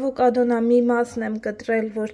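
A woman talking steadily; her speech fills the whole stretch with no other sound standing out.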